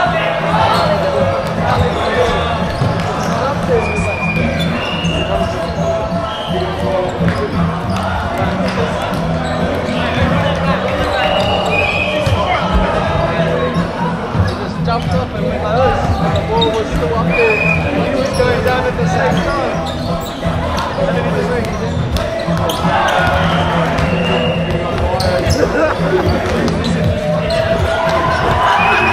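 Busy indoor sports hall during volleyball play: a constant babble of players' and spectators' voices, with volleyballs being struck and bouncing on the hardwood courts. Short, high shoe squeaks on the wooden floor break through every few seconds over a steady low hum.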